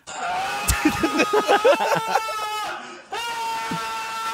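Men laughing over a long, steady high-pitched tone that breaks off briefly about three seconds in and then resumes.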